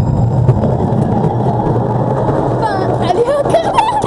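Tram rolling past at ground level right beside the track, a loud, steady rumble of wheels and running gear. Voices call out over it in the last second or so.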